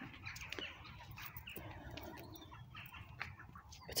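Quiet outdoor ambience: faint birds chirping now and then over a low background rumble.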